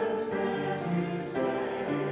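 Mixed church choir singing a hymn verse with upright piano accompaniment, several voices holding notes together and moving to a new chord every half second to a second.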